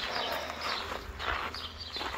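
Footsteps crunching on a gravel road at a steady walking pace, about two to three steps a second.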